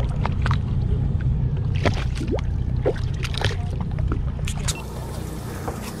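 Steady low rumble of a boat's twin Mercury outboard engines idling, with scattered light clicks and water slapping against the hull.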